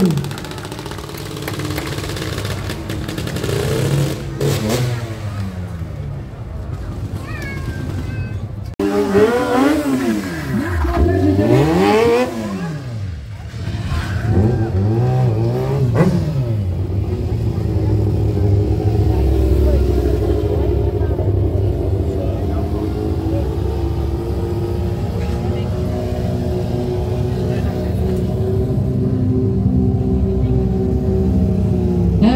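Stunt bike engines revving hard, the pitch swooping up and down again and again through the first half, then settling into a steadier engine drone.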